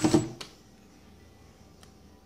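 Cordless drill driving a hinge screw into a plastic dowel in a cabinet door, running in a few short pulses of the trigger. It stops with a sharp click about half a second in, and after that there is only faint room tone.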